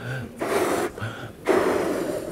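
A man inflating a rubber balloon by mouth: two long breaths blown into it, each preceded by a quick gasping inhale.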